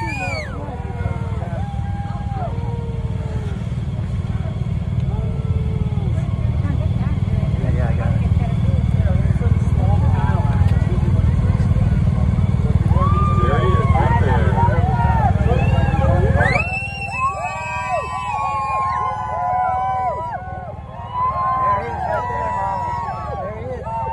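Roadside crowd cheering and shouting as a motorcade of police motorcycles and vehicles passes. A heavy low rumble underlies it and cuts off abruptly about three-quarters of the way in, after which the shouting is clearer.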